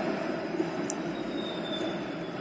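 Steady outdoor street background noise with no distinct event, and a faint thin high whine in the second half.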